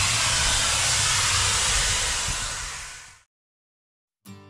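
A loud, steady hiss with a low rumble underneath, fading out about three seconds in and followed by silence.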